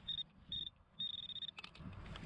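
Handheld metal-detecting pinpointer beeping as its probe is pushed into gravel: two short high beeps, then a longer one about a second in, signalling metal near its tip.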